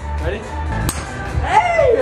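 Golf club striking a ball on a swing: one sharp click about a second in, over background music.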